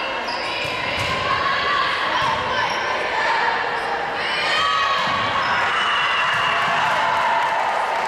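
Gym sounds of a volleyball rally: sneakers squeaking on the hardwood court, with players calling out and spectators' voices echoing in the large hall.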